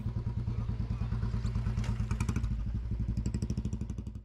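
Small motorbike engine running at low speed, a steady low putter of rapid even pulses, with a few faint clatters.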